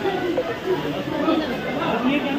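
Several people talking over one another at close range, indistinct chatter.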